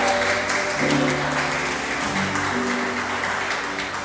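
Audience applauding, the clapping slowly fading, over a piano accompaniment holding a few sustained chords that change twice.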